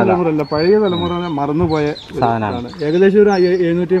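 A voice singing long held, slightly wavering notes of a song, with short high bird chirps over it.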